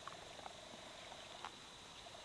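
Faint, fast-pulsing buzz of a model B-29's four motors flying at a distance. The buzz cuts out about a second and a half in, the way it does when the throttle is cut, since the model is steered only by throttle. A few faint ticks come through as well.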